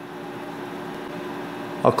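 Steady mechanical hum with a few faint, even tones in it, like a fan or idling machinery; a man's voice begins near the end.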